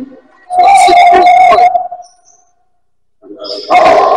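A person's voice holding one drawn-out, steady-pitched call, which fades out just after two seconds. It is followed by about a second of dead silence, and the sound comes back near the end.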